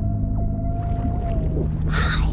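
A seal's long moaning call, held on one slightly rising note for about a second and a half, over a steady low music drone.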